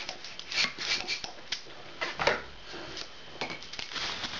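Hand pump inflating a long green modelling balloon: three rushing air strokes about a second apart, then light handling clicks near the end.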